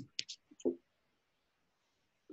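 A quick cluster of small clicks and soft knocks in the first second, then quiet.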